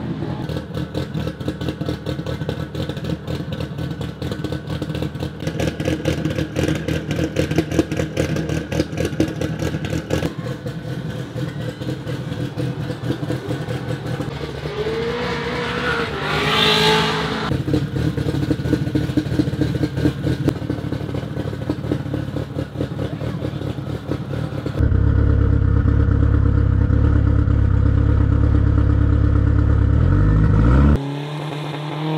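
SR20 four-cylinder engine of a Holden Gemini drag car running with a fast pulsing exhaust note, blipped once with a quick rise and fall in pitch past the middle. Near the end it steps up suddenly to a louder, deeper drone heard from on board the car.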